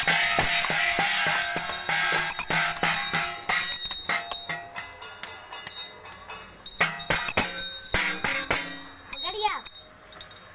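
Steel thali plates beaten rapidly with a wooden stick, a dense ringing metallic clatter. About four seconds in it thins out to a few separate strikes.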